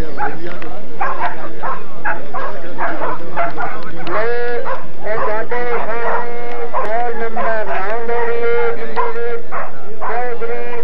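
Greyhounds yelping and whining as their handlers hold them back. Short, quick yelps come first; about four seconds in they give way to long, high, drawn-out whines.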